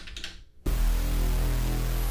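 Nord Stage 3 synthesizer sounding its split's panel A patch, an OB-8-style synth bass: after a couple of faint button clicks, a low, rich note starts suddenly about two-thirds of a second in and is held steady.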